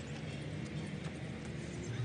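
A few faint slaps and knocks as a freshly caught fish lands and flops on paving stones, over a steady low rumble.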